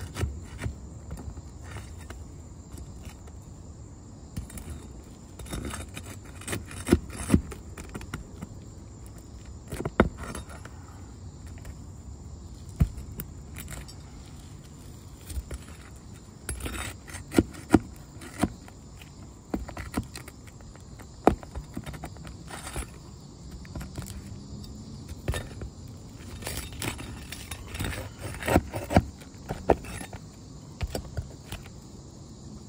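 Flat metal pry bar scraping and clicking under asphalt roof shingles as a shingle is worked loose and lifted, in irregular sharp taps and scrapes, a few louder than the rest.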